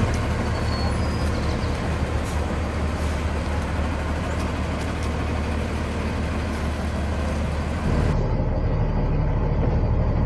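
Diesel pusher motorhome engine running at low speed while reversing with a trailer in tow, a steady low drone. About eight seconds in, the sound switches to the engine's hum as heard inside the cab.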